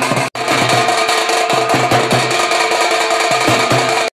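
Street drums slung at the waist and beaten with sticks in a fast, steady rhythm, with a momentary break about a third of a second in.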